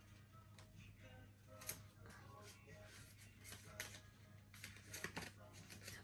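Near silence with faint paper rustles and a few light clicks from a paper receipt and gift tags being handled.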